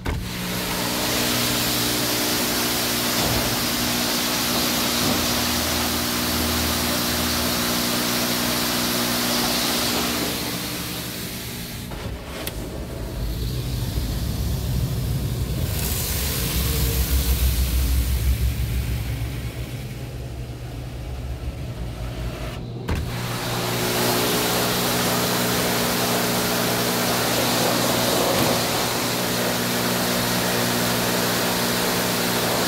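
PDQ Tandem SurfLine automatic car wash spraying water over a car, heard from inside the car as a steady hiss over a constant machine hum. About twelve seconds in, the hum gives way to a deeper, louder rumble for about ten seconds, then the hum returns.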